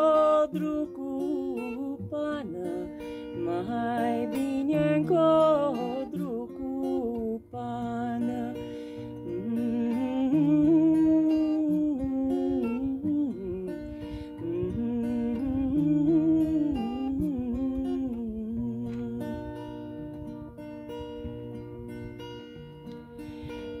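A woman singing a slow Bucovina folk song to her own acoustic guitar accompaniment. The voice is strongest in the first half, and plain guitar chords carry the last few seconds.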